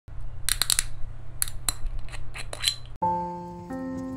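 Metal screw cap of a green glass soju bottle being twisted open, a quick run of sharp clicks and crackles as the seal breaks. About three seconds in the sound cuts off and music with held notes starts.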